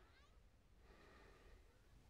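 Near silence: quiet room tone with a few faint, short chirping glides near the start.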